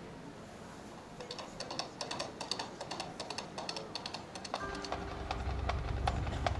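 Marching band front-ensemble percussion opening a show: quick, light, uneven wooden clicks begin about a second in. About four and a half seconds in, a low sustained note enters under them, with a steady higher tone.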